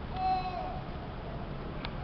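A brief, faint voice-like hum with a few overtones, falling slightly in pitch, over the hall's steady background hum; a single sharp click near the end.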